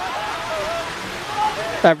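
Heavy rain falling: a steady, even hiss.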